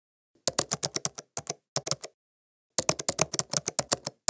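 Typing on a computer keyboard: sharp individual keystroke clicks, a quick run of them, a few spaced strokes, a short pause, then a faster run near the end as a short phrase is entered.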